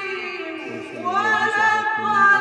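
A qari reciting the Quran in the melodic husn-e-qirat style, his voice a cappella. One phrase tails off, and about a second in a new long note swells in and is held.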